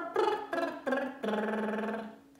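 A woman's lip trill over an arpeggio, sung with every note broken off on its own: three short separate notes, then one held note. The notes are separated instead of slurred, which is the fault to avoid in this exercise.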